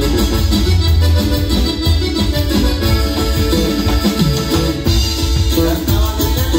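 Live band playing Latin dance music, with electric guitar, bass guitar and drums, amplified through PA speakers.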